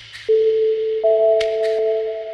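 Generative pentatonic ambient music: a held electronic tone enters shortly after the start and a second, higher tone joins about a second in and sustains with it. A pair of quick high ticks sounds about a second and a half in.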